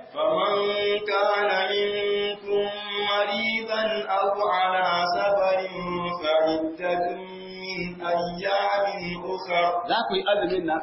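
A man reciting the Quran in a melodic chant, holding long drawn-out notes with slow turns in pitch and brief pauses for breath.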